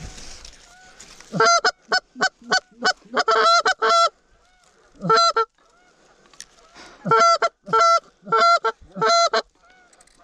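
Goose honks close and loud, in two quick runs of about a second and a half to three seconds each, with a single honk between them.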